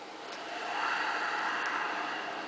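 Handling noise from a hand-held camera: a rustling hiss that swells about half a second in and eases near the end.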